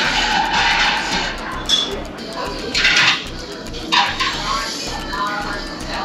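Ramen noodles being slurped: a long slurp at the start, then three shorter ones, over background music.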